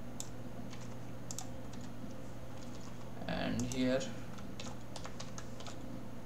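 Computer keyboard keys tapped in short, scattered runs while code is typed, over a low steady hum.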